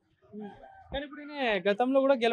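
A rooster crowing: one long crow that starts about a second in, rises, then settles into a held note still going at the end.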